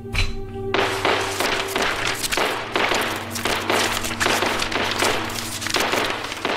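Rapid, overlapping pistol shots from several shooters at an indoor firing range, starting about a second in and continuing as a dense, unbroken run, over a steady background music bed.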